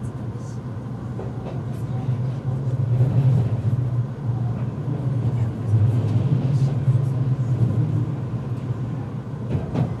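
Cabin running noise of an Odakyu 30000 series EXE Romancecar electric train under way: a steady low rumble of wheels and running gear that grows louder over the first three seconds and then holds, with swells.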